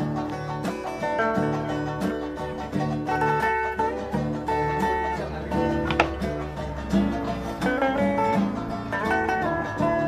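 Electric and acoustic guitars played together in an instrumental jam: picked, sustained melody notes over a steady, repeating pattern of low notes. A brief sharp click about six seconds in.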